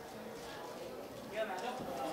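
Background chatter of several indistinct voices, with one voice calling out more clearly about one and a half seconds in.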